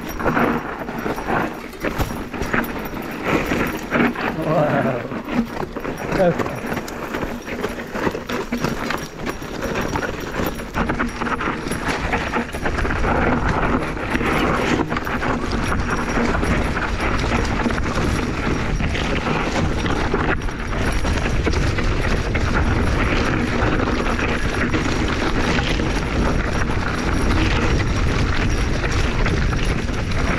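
Mountain bike clattering and rattling over rocky singletrack, with brush scraping past. From about halfway there is a steady rush of wind noise on the helmet camera, with the rattle of the bike over the rough trail still running under it.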